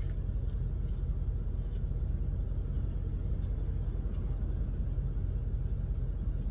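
Steady low rumble of a car's cabin, with a few faint crunches as a crisp lillypilly fruit is bitten and chewed.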